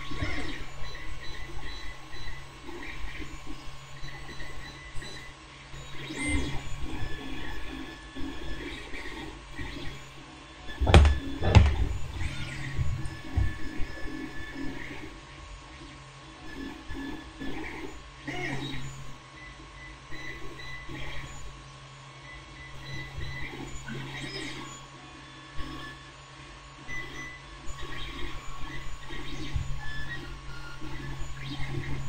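Light handling sounds of small paper-card model parts, scattered soft rustles and taps of card and fingers, over a steady hum, with a short cluster of louder knocks about eleven seconds in.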